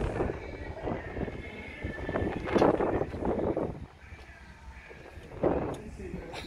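Wind buffeting the microphone in uneven gusts, loudest about two and a half seconds in and again near the end.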